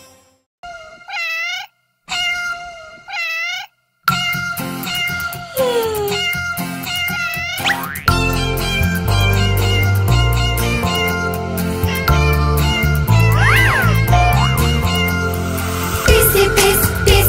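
Two cat meows, each under a second long, with near silence between them. About four seconds in, an upbeat children's song intro begins with sliding whistle-like notes, and a steady bass beat joins about halfway through.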